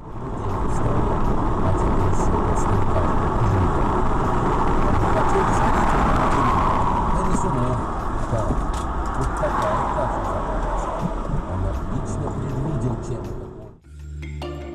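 Steady road and engine noise heard from inside a car driving at highway speed, as picked up by a dashcam.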